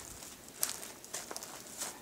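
Faint, irregular ticks and rustles, about half a dozen over two seconds, from a person moving about while holding the camera.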